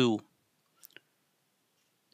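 The end of a spoken word, then near silence broken by two faint, short clicks just under a second in.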